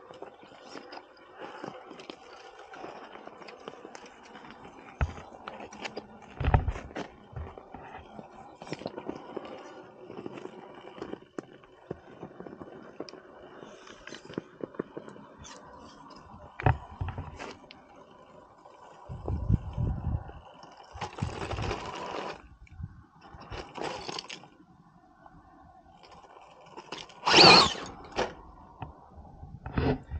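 Axial SCX10 Pro radio-controlled rock crawler climbing over rock: tyres and chassis scraping and crunching on stone over a faint steady drivetrain whine, with scattered clicks. A few louder rushes of noise break in, the loudest near the end.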